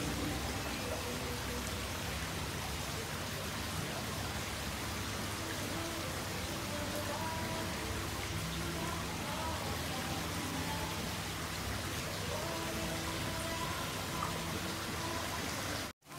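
Steady hiss of water in a shallow tub holding a large koi.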